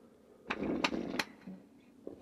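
A person taking a noisy slurping sip from a cup, a short rasping burst with a few sharp clicks lasting under a second, starting about half a second in.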